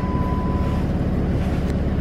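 Minivan engine idling with a steady low hum. A thin, steady high tone sounds through the first second and then stops.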